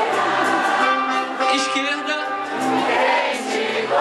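Live band playing a groove with a repeating bass line while many voices sing the melody together, an audience singing along.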